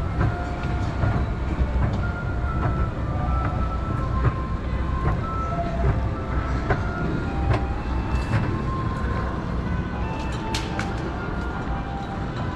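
Mitsubishi pallet-type inclined moving walkway (Auto Slope) running, a steady low rumble with scattered light clicks from its moving pallets.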